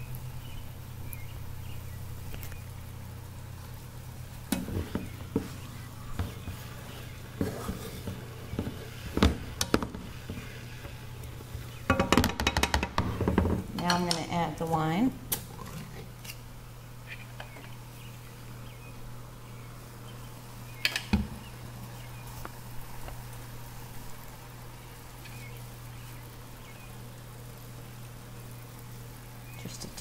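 Kitchen utensils and a pan clinking and knocking in scattered strokes, busiest in a cluster of clatter about twelve to fifteen seconds in, over a steady low hum.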